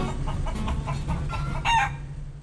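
Chicken-like clucking with one short, loud crowing call near the end, over a low steady hum.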